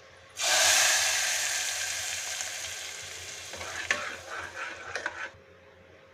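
Hot tempering of oil and green chillies poured into cooked dal in an aluminium pressure cooker: a sudden loud sizzle about half a second in that slowly fades. Near the end a spoon clinks against the pot as it is stirred in, and the sound stops about five seconds in.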